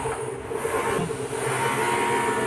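A steady mechanical hum with several held tones, unchanging throughout.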